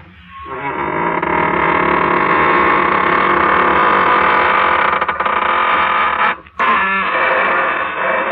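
Long, drawn-out creak of the show's signature squeaking door, a radio studio sound effect, swinging slowly open. It breaks off briefly about six and a half seconds in and then creaks again.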